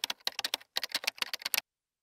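Typing sound effect: a quick, uneven run of computer-keyboard keystroke clicks that stops about one and a half seconds in.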